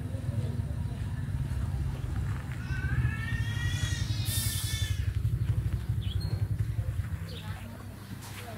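A motor running steadily with a low hum, a rising whine about three seconds in and a short hiss just after.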